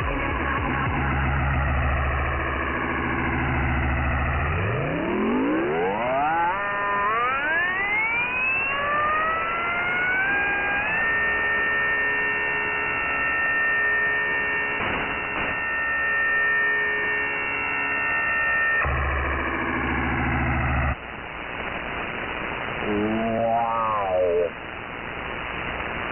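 Electronic synthesizer tones from a pirate broadcast heard over shortwave in upper sideband. A low drone gives way to several tones gliding upward in steps over about six seconds, which then hold as steady high tones. Near the end come a couple of seconds of static hiss and a brief warbling tone.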